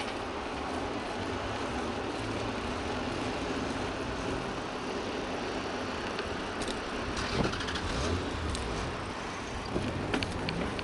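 Steady rushing wind and tyre noise of a bicycle riding on a paved road, picked up by a bike-mounted action camera. A few sharp clicks and knocks come in the second half.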